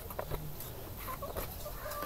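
Domestic chickens clucking faintly in the background, a few short calls.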